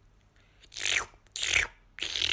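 A person's breathy, unvoiced mouth sounds: two short hissing breaths, each falling in pitch, about a second in, then a longer one starting at the end.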